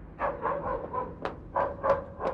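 An animal barking, about six short calls in quick succession.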